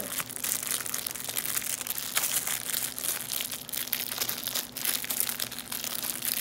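Clear plastic packaging bag crinkling and crackling continuously as it is handled and pulled open by hand.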